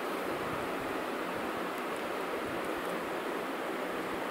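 Steady background hiss of the recording microphone's noise floor, even and unchanging.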